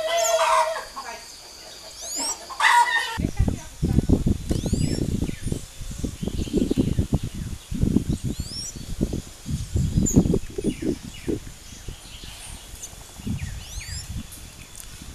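Short, high, rising bird chirps repeat throughout, with a louder pitched call in the first three seconds. From about three seconds in, heavy low rumbling gusts of wind buffet the microphone.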